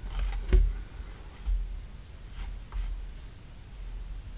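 Paper card and thread being handled during hand-stitching: a few faint soft taps and rustles as the needle and thread pass through the pierced card, the sharpest about half a second in, over low bumps.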